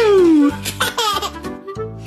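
Baby laughing: one long squeal falling in pitch, then a couple of shorter bursts of laughter, over background music.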